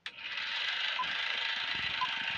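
Film projector running with a steady mechanical clatter, with a short high beep about a second in and again near the end, like a film-leader countdown.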